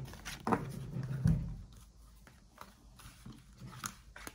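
Tarot cards being handled and laid down on a cloth-covered table: light paper taps and rustles, with a brief low sound in the first second and a half.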